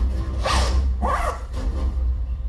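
Two quick zipper sounds, one about half a second in and one a little after a second, played as sound effects through the stage speakers over a steady low hum.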